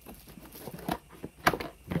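Cardboard packaging being handled: a few sharp taps and scrapes as the end of a retail box is opened and the inner cardboard tray is slid out. The loudest knock comes about a second and a half in.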